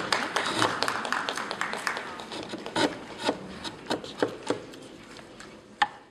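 Hand carving chisel paring into a block of wood: a dry scraping cut with many sharp clicks as shavings come away. It fades out over the last few seconds.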